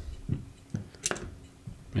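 Fingers working a small plastic camera-cable connector into its socket on a drone flight controller: soft handling sounds, with one sharp click about a second in.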